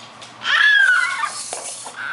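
Baby's high-pitched squeal: one vocal call starting about half a second in, dipping slightly in pitch and trailing off over about a second, with a couple of faint taps on a toy drum.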